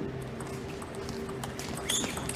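Table tennis ball in a doubles rally: a quick run of sharp clicks as it is struck by the bats and bounces on the table, coming faster and louder near the end.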